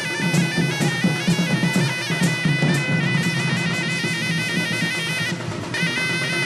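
Folk double-reed pipe of the mahuri kind playing a stepped, ornamented melody over a steady low tone, with barrel drums beating under it. The drum strokes thin out after about three seconds, and the pipe breaks off briefly near the end before coming back in.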